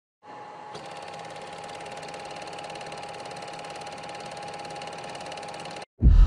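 Film projector clatter, a rapid even mechanical rattle with a steady high tone running under it, over a film-leader countdown. It cuts off suddenly near the end.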